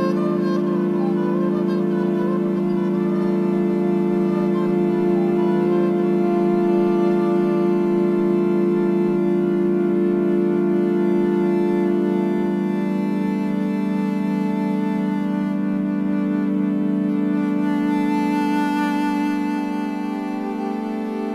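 Homemade electric viola with magnetic pickups and an aluminium fingerboard, its strings sustained by an EBow: several long notes held together in a steady, unbroken drone with hall reverb. The chord shifts about two-thirds of the way through.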